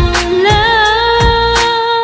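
Chinese pop ballad sung in Vietnamese, mid-song: a long held melody note that bends up and then settles, over a drum beat about twice a second.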